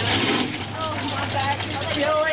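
Pickup truck engine running steadily under load as the truck pushes through deep mud, with people shouting encouragement over it.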